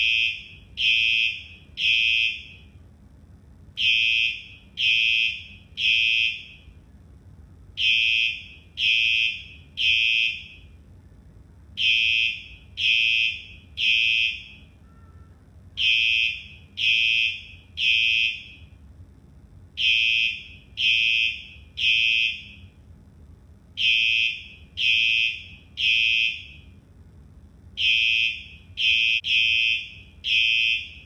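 School fire alarm horn sounding the temporal-three evacuation pattern: three high-pitched beeps about a second apart, then a pause, repeating every four seconds.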